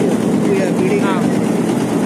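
Tea-grading sieve sorting machine running with a steady, loud mechanical drone, with voices in the background about half a second in.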